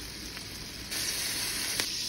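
Peeled Argentinian red shrimp sizzling as they fry in oil in a stainless steel pan. The sizzle is steady and grows louder about a second in.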